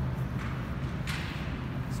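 Two brief swishes, about half a second and a second in, as the athletes' legs and shoes brush across artificial turf during a lying leg-crossover drill, over a steady low background hum.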